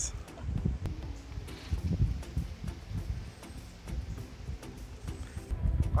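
Wind buffeting the microphone in low, uneven rumbling gusts, with a few faint knocks.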